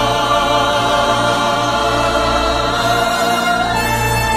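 A choir singing long, held chords with vibrato over a steady low instrumental accompaniment, in a slow, hymn-like song.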